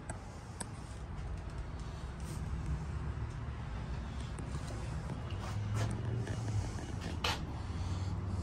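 Low, steady engine rumble that grows gradually louder, with a short sharp click about seven seconds in.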